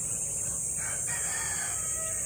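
A rooster crowing faintly: one drawn-out crow that starts a little under a second in.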